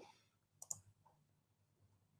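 Near silence, broken by a quick double click of a computer mouse about two thirds of a second in.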